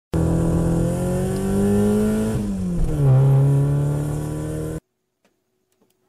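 Car engine sound effect accelerating: the pitch climbs, drops at a gear change about two and a half seconds in, climbs again and holds, then cuts off suddenly near five seconds.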